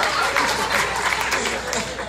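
Audience applauding, with voices mixed in, and the clapping dying down near the end.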